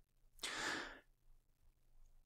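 A single sigh: one breathy exhale, about half a second long, shortly after the start.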